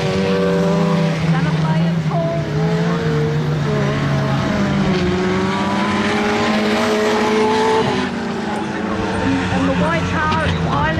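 Saloon race car engines running on a dirt speedway oval, a continuous drone whose pitch rises and falls slowly as the cars lap.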